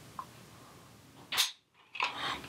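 Dry-fire snap of a 1911 hammer falling as a trigger pull gauge draws the trigger through its break, a single sharp click about one and a half seconds in. The gauge reads a break at about six pounds. A faint tick comes shortly before, over quiet room tone.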